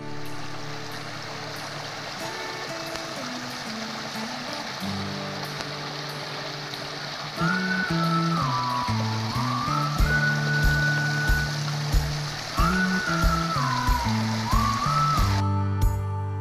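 A small rocky stream flowing, a steady rush of water, under background music. A melody comes in about halfway and a beat soon after; the water sound stops just before the end, leaving the music.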